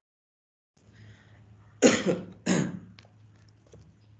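A man coughing twice in quick succession, each cough sudden and loud, then fading quickly.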